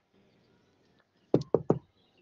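Three quick knocks in a row about a second and a half in.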